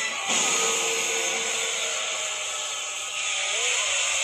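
Anime battle soundtrack: music under a steady hiss of sound effects, with a short rising-and-falling tone near the end.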